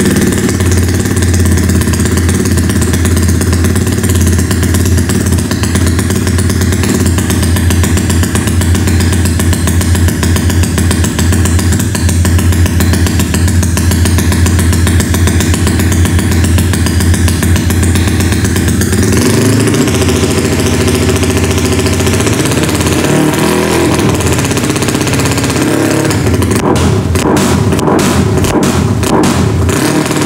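Yamaha Mio scooter's single-cylinder engine, bored up to 220 cc, running loud through a large aftermarket exhaust with a note the owner finds noisy and too tinny. It holds a steady idle, then from about 19 s is blipped and revved lightly and unevenly, not to full throttle, since the engine is not yet broken in. With no CVT fitted, it revs unloaded.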